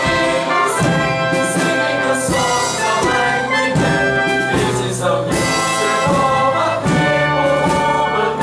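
Live pit orchestra playing a loud, brass-led instrumental passage of a stage musical, with sustained chords and a steady, marching pulse.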